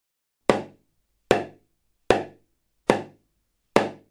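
Small drum (bębenek) struck five times at an even, unhurried pace, each beat decaying quickly. The five beats give the answer to the counting riddle: the ladybird has five spots.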